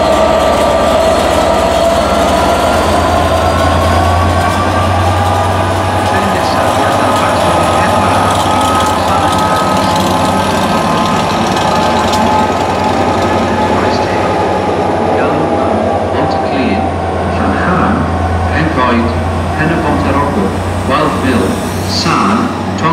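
Class 67 diesel locomotive's two-stroke V12 engine working as it pulls a train of coaches out of the station and past, a steady low drone. In the second half, short clicks of the coach wheels on the rails come through over it.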